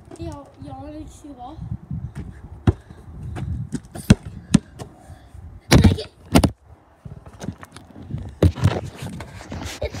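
A basketball bouncing on a gravel court, a single bounce every second or so, with a louder cluster of knocks about six seconds in as the ball hits the phone recording it on the ground.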